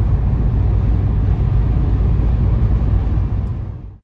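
Cabin sound of a BMW M car's V10 cruising steadily at about 3,000 rpm in sixth gear on the highway: a deep, even drone mixed with road and wind noise, running with nothing abnormal. It fades out near the end.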